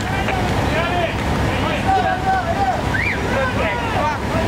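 Voices calling out at a fire scene over a steady, low engine rumble.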